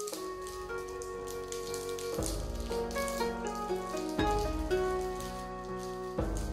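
Background music, a melody with a deep bass note returning about every two seconds, over the crinkle of a thin plastic onigiri wrapper being folded by hand.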